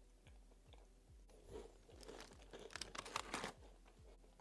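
Close-up chewing and crunching of an Oreo cookie, a dense run of short crackly crunches starting about a second and a half in and stopping shortly before the end.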